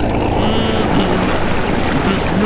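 A boat's engine rumbling steadily, with water churning and rushing at the hull as the barge gets under way.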